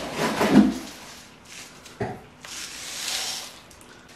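Handling and rustling in the first second, a sharp knock about halfway, then pon, a gritty granular mineral potting mix, hissing and rattling as it is poured from a plastic cup into a pot to backfill around the roots.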